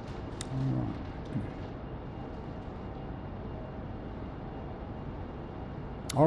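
Steady background noise of a quiet meeting room, with a short low murmur of a voice about half a second in and a couple of faint clicks.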